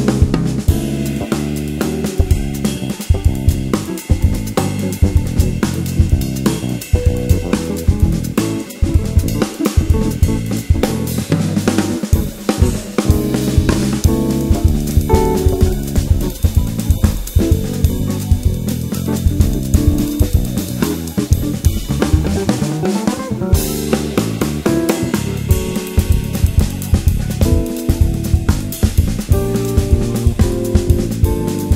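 Instrumental samba-jazz band playing, with the drum kit to the fore: busy bass drum, snare, hi-hat and cymbal strokes over piano and bass.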